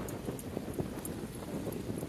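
Footsteps on a concrete pier with irregular knocks, over wind buffeting the microphone and waves washing against the pier.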